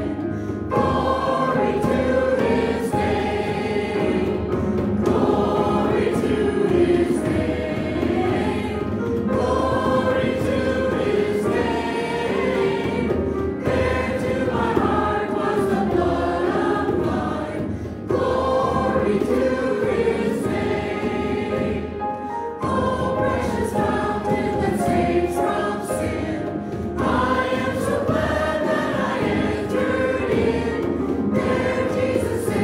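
Praise team and standing congregation singing a hymn together, with instrumental accompaniment, in sustained phrases that pause briefly between lines.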